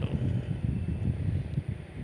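Wind buffeting the microphone: an uneven, gusting low rumble with a faint steady hiss above it.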